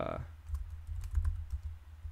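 Computer keyboard being typed on: a few light, scattered key clicks over a steady low hum.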